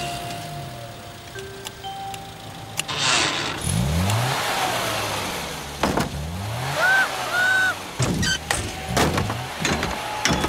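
Cartoon car engine revving up in short rising bursts as a small car shunts parked cars, with a run of bumper knocks in the second half. Two short squeaks come just after the first knock. Background music runs under it all.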